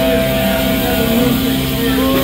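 Loud live metallic hardcore band music: heavily distorted electric guitars holding long steady notes over a dense wall of sound.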